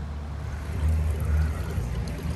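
Low, uneven wind rumble on the microphone, swelling about a second in, over the steady splash of water running down a small tiered ceramic garden fountain.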